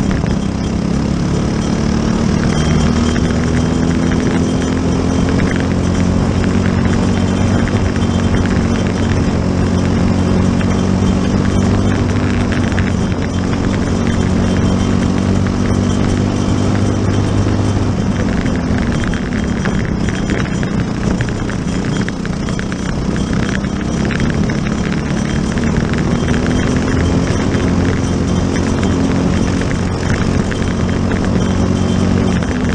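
Briggs & Stratton LO206 single-cylinder four-stroke kart engine running at racing speed, heard from on board the kart. Its pitch climbs steadily as the kart gathers speed, drops back twice when it slows, and climbs again near the end.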